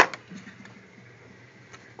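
A single sharp click as a hard plastic Vantage Pro 2 weather-station part is handled, followed by a couple of faint light ticks over quiet room tone.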